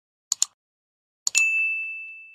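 Subscribe-button animation sound effects: a mouse click, a quick double snap, about a third of a second in, then a second click followed by a single bright bell ding that rings on at one pitch and slowly fades.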